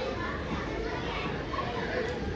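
Many children's voices chattering and calling at once, a steady mixed murmur with no music.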